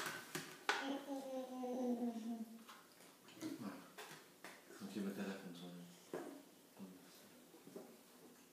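A small child's wordless vocalising, in two stretches, over sharp clicks and taps of a plastic spoon scraping a plastic yogurt pot.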